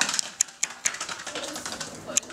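A quick series of light clicks and knocks, about six in two seconds, as a wooden-framed glass sliding door is handled and rattles in its frame.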